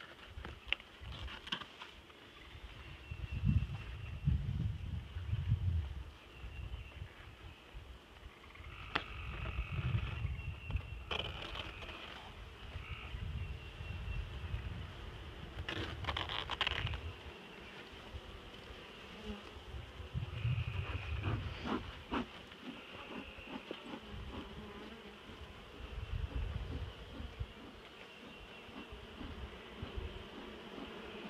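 Honeybees buzzing inside an opened log hive, while gloved hands handle the hive, with a few short scrapes and clicks. Low rumbling swells come and go every few seconds.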